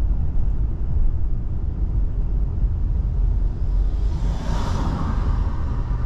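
Steady low road and engine rumble heard from inside a moving car. About four seconds in, a brief whoosh swells and fades.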